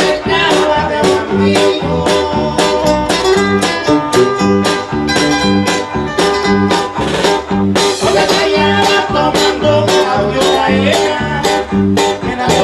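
Live Mexican música campirana from a band: strummed guitars over a bass that alternates between two low notes, with a steady, even beat.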